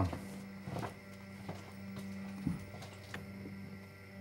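Steady low electrical hum of an indoor room, with a few faint taps and clicks scattered through it.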